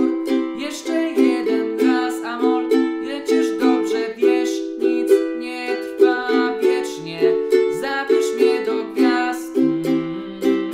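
Ukulele strummed in an even down-down-up-up-down-up pattern, cycling through the chords C major, A minor, E minor and D major.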